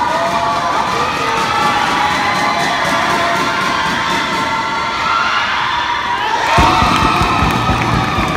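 Gym crowd of basketball spectators cheering and shouting, many voices at once, during a free throw. A low beat comes in near the end.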